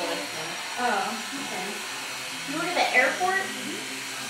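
Two brief snatches of indistinct talk over a steady rushing background noise.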